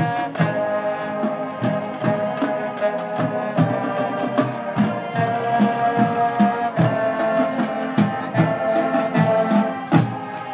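High school marching band playing, brass holding sustained chords over regular drum hits.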